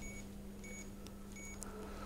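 Keypad beeps from a Marsden DP3800 scale indicator as a patient's height is keyed in: three short, high beeps about 0.7 s apart, with a light click between the last two, over a faint steady hum.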